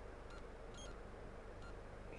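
Quiet room tone with a faint steady low hum and three very short, faint high-pitched blips.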